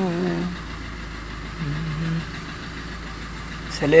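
Maruti Ertiga's engine idling, a low steady hum heard from inside the cabin.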